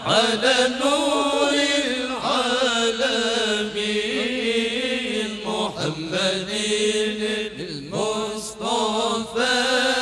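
Several men chanting together into microphones, unaccompanied, in long drawn-out notes with winding ornamented turns, with brief breaks for breath.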